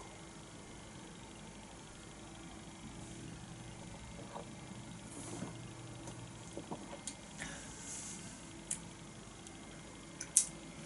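Faint sounds of a person drinking beer from a stemmed glass and setting it down on a table: a few small clicks and knocks in the second half over a steady low room hum.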